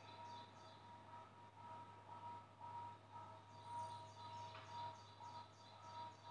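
Faint garden ambience: a bird calling in a repeated series of short, high chirps over a steady low hum.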